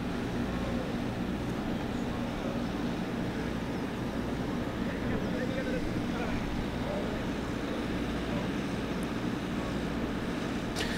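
Steady low mechanical hum with outdoor background noise, unchanging throughout.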